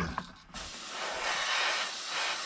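Gravity-feed airbrush spraying paint onto a lure: a steady air hiss that starts about half a second in.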